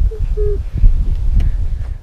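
Loud low rumble of wind buffeting and handling noise on a small action camera's microphone. Early on, a small child gives a short two-note hummed 'mm-hm', as if answering a question.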